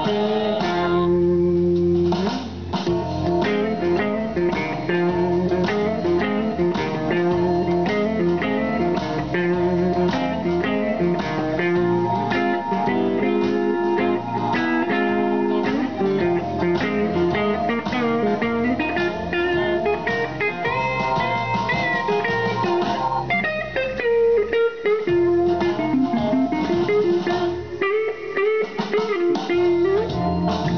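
Les Paul-style electric guitar played through an amplifier: a continuous blues lead of single notes and phrases, with bent notes gliding in pitch from about two-thirds of the way in.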